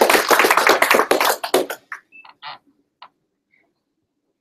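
A small group applauding with dense clapping that dies away about two seconds in, leaving a few scattered single claps.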